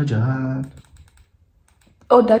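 A person's voice holding a drawn-out sound for under a second, followed by a few faint clicks.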